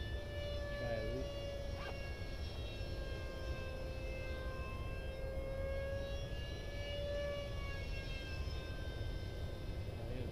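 Electric ducted fan of a 64 mm RC MiG-15 model jet whining in flight, its pitch drifting slowly up and down.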